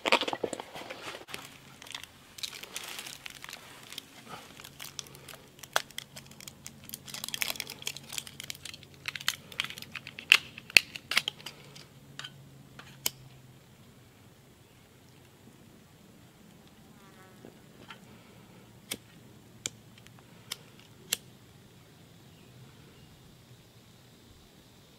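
MRE pouches and plastic wrapping crinkling and rustling as they are handled, in irregular bursts for about half the time. Then it goes quieter, with a few sharp separate clicks near the end.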